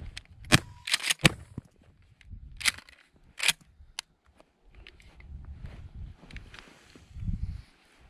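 Shotgun being handled and its action worked: a run of sharp metallic clacks, about six in the first four seconds, followed by a low rumble of handling noise.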